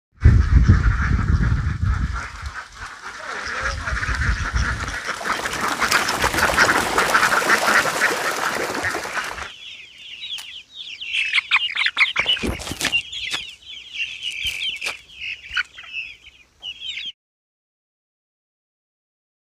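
A large flock of ducks quacking together, over a low rumble in the first few seconds. After an abrupt cut about nine and a half seconds in, caged young chickens cheep in many short high chirps, which stop suddenly a second before the end.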